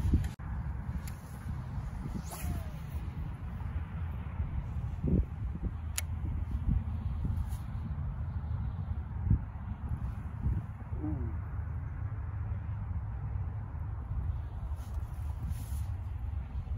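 Wind blowing across the microphone: a steady low rumble throughout, with one sharp click about six seconds in.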